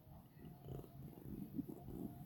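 Faint, low, rough snoring from a sleeping child close to the microphone.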